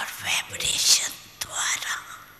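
Soft, breathy, near-whispered speech.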